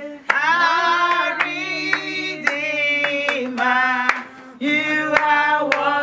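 A group of people singing together with hand-clapping keeping the beat, roughly two claps a second. The singing breaks off briefly just after four seconds, then comes back in.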